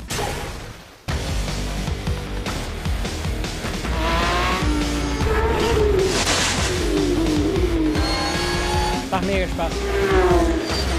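Background music with a steady beat, mixed with the sound of Porsche 911 GT3 Cup race cars. After a brief dip in the first second, engine notes rise and fall in pitch from about four seconds in, with tyre squeal.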